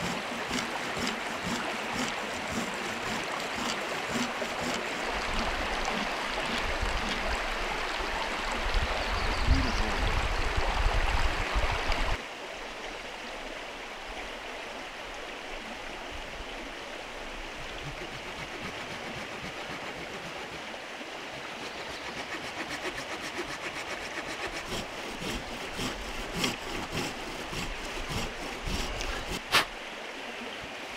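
Leatherman multitool knife blade carving a notch into a grand fir stick: repeated short cutting and scraping strokes on the wood over a steady rushing background. The background drops to a quieter level about twelve seconds in.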